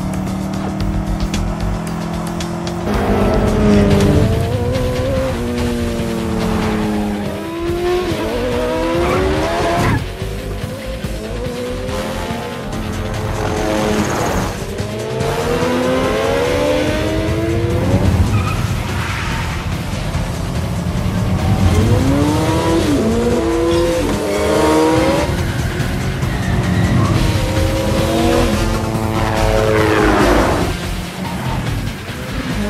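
Film chase soundtrack: Mini Cooper engines revving hard and winding up through the gears over and over, with tyres squealing, mixed with a music score.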